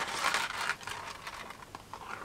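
Small beads rolling and clicking on a paper plate as the plate is flexed into a funnel to pour them out, with light paper scraping. The ticks are busiest in the first second and thin out toward the end.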